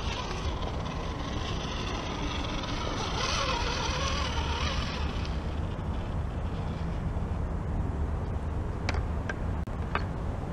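Axial SCX10 radio-controlled rock crawler's small electric motor and geared drivetrain whirring as it crawls over loose rock, over a steady low rumble. A few sharp clicks near the end.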